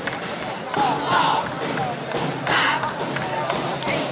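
Several voices calling out over crowd noise, with two louder shouts about a second and two and a half seconds in, and a few dull thuds.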